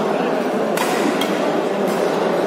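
Badminton rackets striking a shuttlecock during a doubles rally: two sharp hits about a second apart, over a steady murmur of spectators in the hall.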